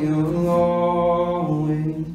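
A man's voice singing one long held note of a worship song, steady in pitch, breaking off near the end.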